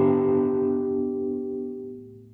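Electric guitar chord ringing out and slowly dying away: a G major chord voiced with B in the bass. It is played on a Squier Bullet Mustang through an Orange Micro Dark amp.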